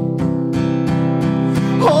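Acoustic guitar strummed in a steady rhythm, about four strums a second, in a short instrumental gap of a song; a man's singing voice comes back in right at the end.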